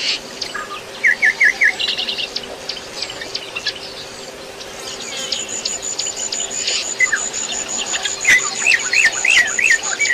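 Birds calling in short, quick series of chirps over a steady insect drone. A run of four chirps comes about a second in and a longer run near the end, and a thin high steady tone joins halfway through, with a faint low hum underneath.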